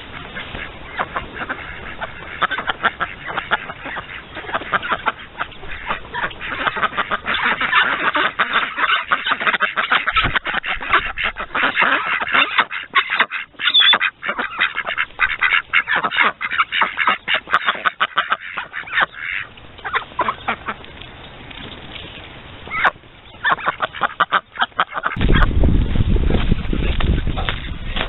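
A group of ducks quacking rapidly and repeatedly, with a pause about two-thirds of the way through and a short burst after it. A loud rumbling noise cuts in near the end.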